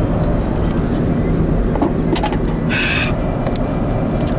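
Steady engine and road noise heard from inside a moving car, a continuous low rumble. A brief higher-pitched sound comes in about three seconds in.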